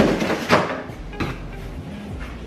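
Cardboard box being lifted and handled, with a few dull knocks and scrapes, the loudest about half a second in.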